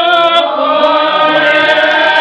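A group of voices singing together unaccompanied, holding long notes and moving to a new chord about half a second in.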